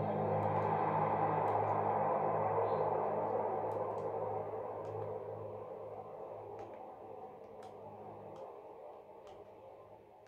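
A song playing through the XGIMI Mogo 2 Pro projector's built-in speaker, heard in the room, gradually fading away over the several seconds; a few faint clicks are heard along the way.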